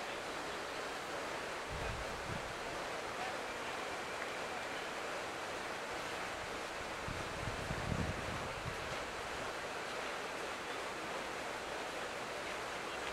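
Steady hiss of open-air noise, with low rumbles of wind buffeting the microphone about two seconds in and again around eight seconds.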